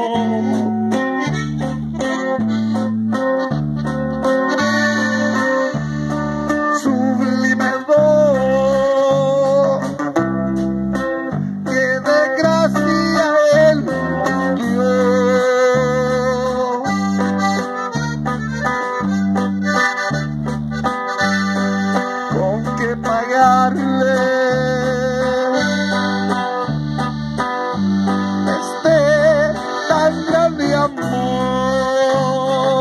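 Live band playing a hymn: accordion and guitar over a steady, evenly repeating bass rhythm.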